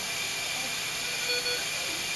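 A steady hiss, with a faint short tone about a second and a half in.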